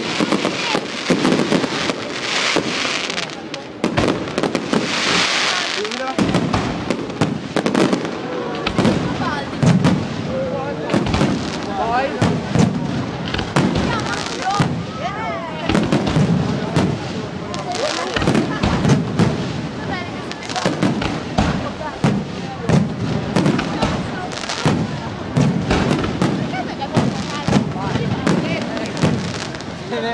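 Aerial fireworks display: a rapid, continuous succession of shell bursts and bangs, with dense crackling from glittering stars through the first few seconds.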